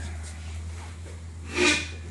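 A short, loud, breathy grunt about one and a half seconds in, as a man heaves himself up from a low seat. It sits over a steady low hum.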